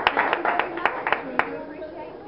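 A small group clapping by hand, the claps thinning out and stopping about a second and a half in, with voices over it.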